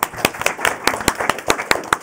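Applause: many hands clapping together.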